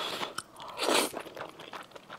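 Close-miked eating of fresh wheat noodles: the noodles are slurped into the mouth, with a short slurp at the start and a louder one about a second in, and small wet mouth clicks of chewing between.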